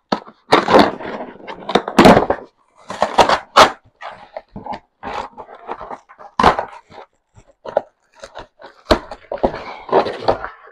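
A cardboard shipping box being cut open with scissors and its flaps pulled apart, close to the microphone: an irregular series of loud crackling, scraping bursts of cardboard and tape.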